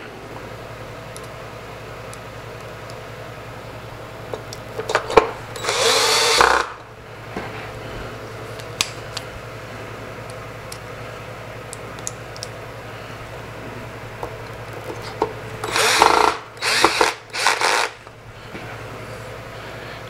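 A 12-volt cordless drill/driver driving screws back into a turntable's chassis: one run of about a second and a half about five seconds in, then three or four quick short bursts near the end.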